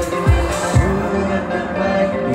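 Live band music led by an electric guitar. Low drum beats come about twice a second and stop about a second in, leaving held guitar chords ringing.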